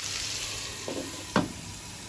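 Cubed potatoes and sliced onions sizzling as they fry in hot oil in a nonstick kadai, a steady hiss with two short, louder sounds about a second in.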